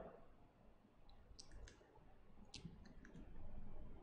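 Faint clicks and taps of a computer pointing device, about half a dozen between one and three seconds in, as an answer choice is circled on a digital annotation canvas, over quiet room tone.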